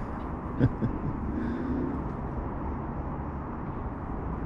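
Steady outdoor background noise, with two short knocks in the first second and a brief faint low hum about halfway through.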